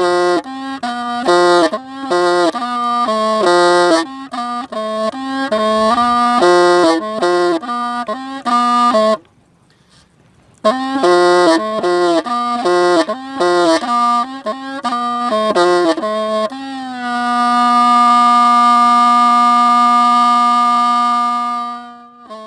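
Hmong raj, a long bamboo pipe, playing a slow, mournful tune in quick runs of short notes. The tune breaks off for about a second and a half near the middle, runs on, then settles on one long held note for the last five seconds, which fades out at the very end.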